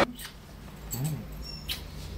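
Close, soft kissing sounds: two light lip smacks, about a second and a half apart, with a brief murmured "mm-hmm" between them.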